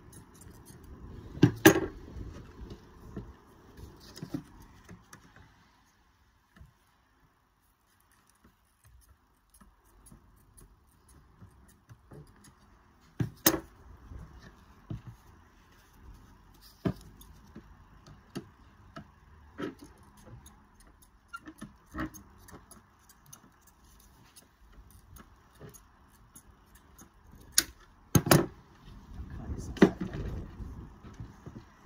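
Tin snips cutting sheet lead, with sharp clicks from the snips' jaws and scattered knocks and rattles as the lead sheet is handled. The loudest clicks come about two seconds in and near the end, with a quiet spell in between.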